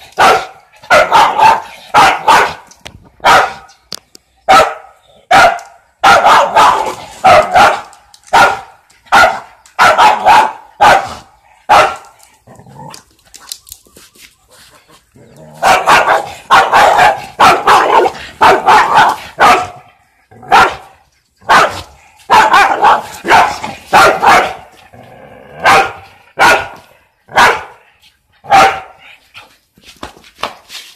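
A dog barking over and over in quick runs of short, sharp barks at a rooster squaring up to it, with a pause of a few seconds about halfway through.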